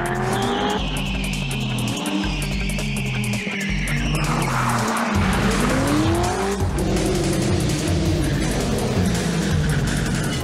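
Chevrolet Corvette Z06's V8 engine revving hard, its note climbing twice as it accelerates, with tires squealing for a few seconds early on, over a background music track.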